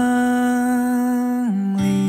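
Song: a male singer holds one long, steady note that drops and ends about a second and a half in. Plucked acoustic guitar notes come in near the end.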